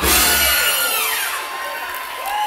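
A live soul band's final hit on a song: a loud chord and cymbal crash with a falling glide in pitch, the bass cutting off about half a second in and the rest ringing out and fading.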